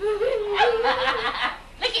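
A high-pitched voice laughing, drawn out for about a second and a half, followed by a short spoken word near the end.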